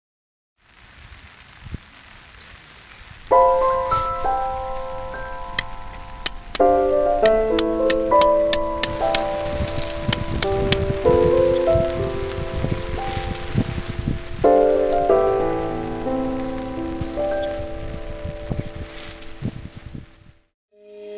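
Rain falling, with sharp clicks of drops striking between about five and nine seconds in. Slow, sustained chords of background music come in about three seconds in and change every few seconds.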